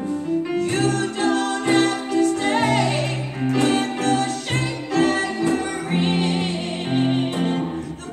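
Gospel vocal group singing, with voices wavering in vibrato, over sustained bass notes and instrumental accompaniment keeping a steady beat.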